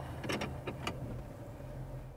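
Car engine idling steadily inside the cabin, with a few sharp clicks from the steering-column automatic gear selector as it is pulled down into drive.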